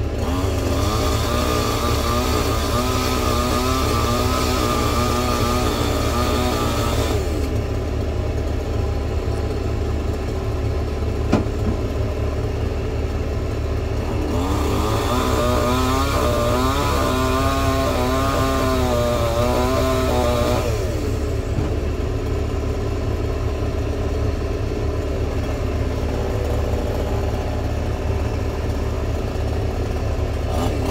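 Excavator diesel engine running steadily, heard from inside the cab, with a wavering whine that rises during two stretches as the hydraulics work the arm and bucket. A single sharp knock about 11 seconds in.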